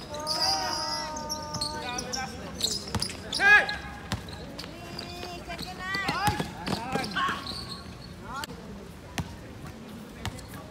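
A basketball game in play: the ball bouncing on the court, sneakers squeaking in short high chirps, and players shouting.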